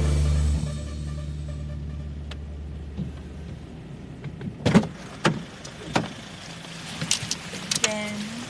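The last held low note of a jingle fades away; then street background with several sharp knocks and clunks about halfway through, the sound of passengers opening a car's rear door and climbing in.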